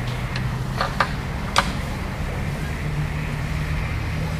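Steady low hum of room or equipment noise, with a few sharp clicks in the first two seconds, the loudest about a second and a half in.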